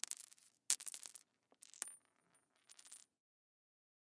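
Metallic chime-like sound effects for animated on-screen text: sharp clinks with a high ringing tail, one at the start, one under a second in and one near two seconds, then a faint flutter around three seconds.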